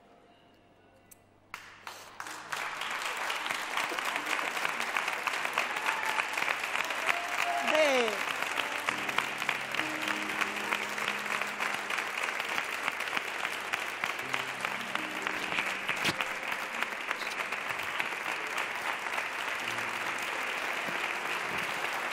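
Studio audience applauding, setting in about two seconds in after a near-silent pause and continuing steadily, with soft sustained background music underneath from about nine seconds in.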